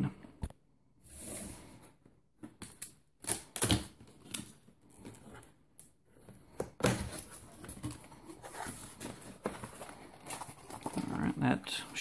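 Cardboard product box being handled and opened: irregular taps, clicks and scrapes of the cardboard, with a tape seal pulled off a flap and a longer stretch of rubbing and sliding about seven seconds in.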